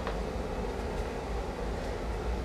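Steady low hum and rumble of a basement boiler running.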